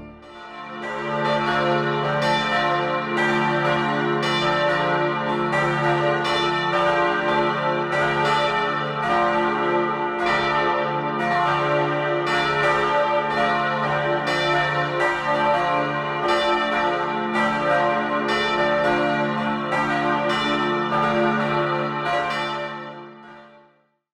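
Several church bells ringing together in a full peal, struck over and over with their tones overlapping, fading out near the end.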